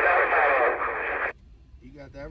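Another CB operator's voice coming over a Cobra 148 GTL CB radio, thin and hissy, cutting off abruptly about a second and a third in as the incoming transmission ends and the squelch closes.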